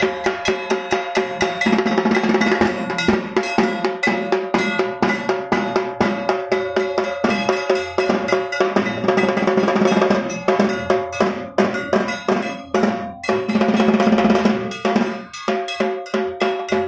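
Temple worship percussion: metal bells or gong beaten rapidly and steadily, about four strikes a second, with drums, the metal leaving a continuous ringing hum underneath.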